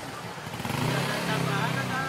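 Vehicle engines running steadily with a low hum, with faint voices in the background.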